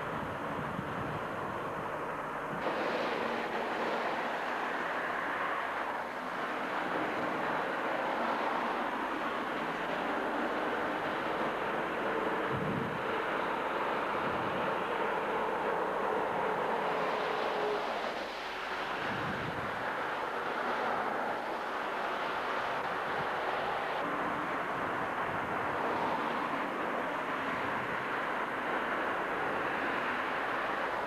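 Road traffic passing on a wet road: a continuous hiss of tyres and engines, with a faint steady hum for a few seconds midway.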